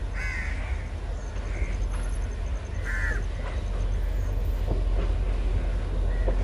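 A crow cawing: two short, loud caws about three seconds apart, with a fainter call between them, over a low rumble that grows a little louder in the second half.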